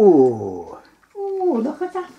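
A baby vocalising: a loud call that falls steeply in pitch into a low gargly sound, then a second, shorter call that dips and comes back up.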